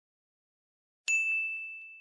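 A logo-sting sound effect: one bright bell-like ding struck about a second in, ringing out and fading away over about a second and a half.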